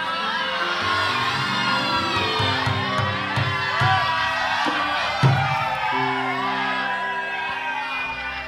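Studio audience shouting and cheering, many voices at once, over background music with a steady bass line; a brief thump stands out about five seconds in.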